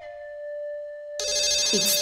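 A held note of background music fades, then about a second in a phone starts ringing, loud and steady: an incoming call.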